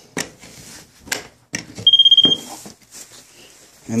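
A moisture meter gives one short, high, fluttering beep about halfway through as its pole-mounted probe touches the base of the wall, signalling that the drywall there reads wet. A few light knocks of the probe against the wall come before it.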